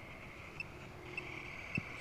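Crickets chirping faintly: a steady high-pitched drone with short chirps repeating at an even pace. A single soft low knock near the end.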